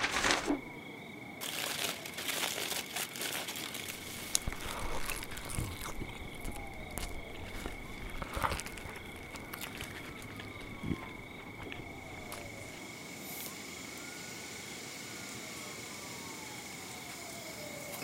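Paper takeout bag rustling and foil wrappers crinkling as food is dug out, with scattered clicks, thinning out after about nine seconds. A faint steady high tone runs underneath.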